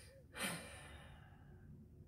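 A woman's soft sigh about half a second in, a short breath that trails off over the next second.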